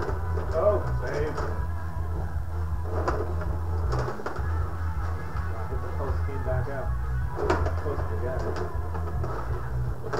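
Tabletop rod hockey game in play: rods rattling and plastic players clacking against the puck, with a few sharper knocks standing out, under background speech and music.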